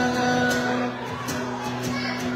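Acoustic guitar strummed in a live solo performance, with a long held note sustaining underneath. The playing gets a little quieter about a second in.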